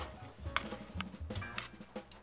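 A metal spoon stirring thick cranberry sauce in a stainless steel saucepan, with several short scrapes and clinks against the pan.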